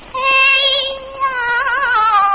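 Female Cantonese opera singing: a long, high held note with vibrato that wavers more strongly about halfway through.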